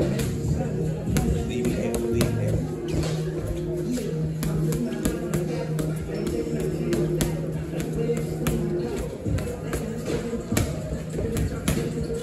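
Background music playing throughout, with boxing gloves repeatedly smacking a trainer's curved body pad in quick, irregular flurries of punches.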